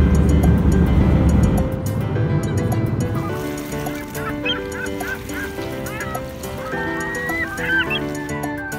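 Airliner cabin noise, a loud low steady rumble, for the first couple of seconds, then background music with held notes. From about four seconds in, a run of short bird calls sounds over the music.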